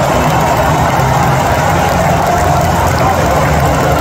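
Stadium crowd roaring in celebration of a goal, loud and unbroken.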